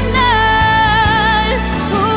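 A song: a female singer holds one long, high note with slight vibrato over sustained instrumental backing.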